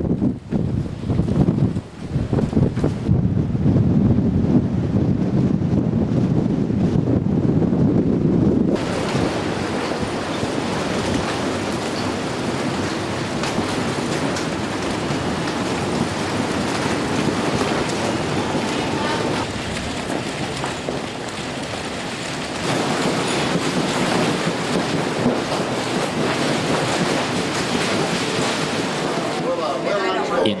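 Hurricane Danny's wind buffeting the microphone with a heavy low rumble, then, after a sudden change about nine seconds in, a steady wash of storm wind and surf.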